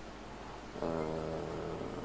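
A man's long, drawn-out hesitation sound "eee", held at one steady pitch, beginning just under a second in.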